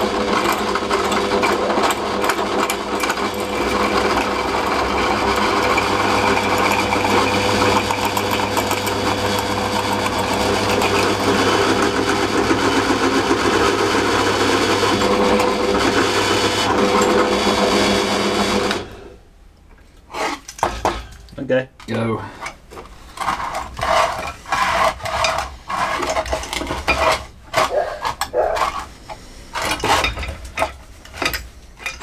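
Pillar drill press running and drilling into a workpiece clamped in a drill press vise: a steady motor hum with the noise of the bit cutting. About 19 seconds in it stops suddenly, followed by scattered metallic clanks and clicks as the steel vise is handled.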